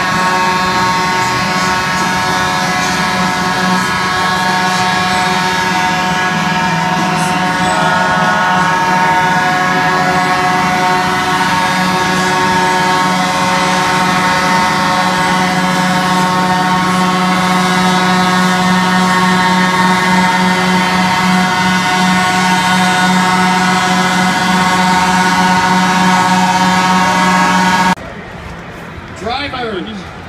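Track-drying trucks running slowly along a wet race track: a loud, steady mechanical drone with a high whine over it.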